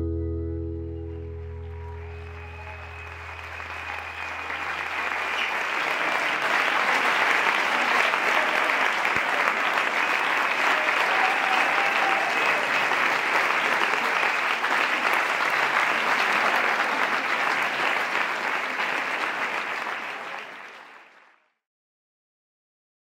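The band's last held chord dies away over the first few seconds as an audience's applause and cheering swell up. The clapping stays steady, then fades out a second or two before the end.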